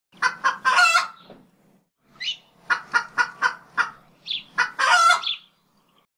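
A chicken cackling in two rounds of short, sharp clucks, each round ending in a longer drawn-out call.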